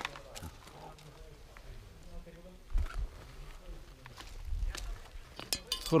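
Quiet stretch with a low wind rumble on the microphone and faint murmuring voices. A few sharp clinks near the end come from small drinking glasses and a glass bottle being handled.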